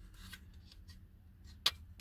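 Faint rubbing and handling of a plastic interior door handle, then one sharp click a little over a second and a half in as a retaining clip is pushed onto it.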